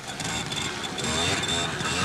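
Italjet 100 cc trials motorcycle engine revving, its pitch rising steadily from about a second in as the rider powers through an obstacle section.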